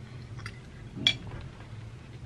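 A single light clink of a fork against a plate about a second in, over a low steady room hum.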